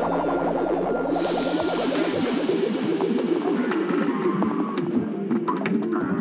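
Psychedelic electronic music: a fast run of repeated synth notes, with a falling whoosh sweep about a second in and crisp ticking percussion coming in midway.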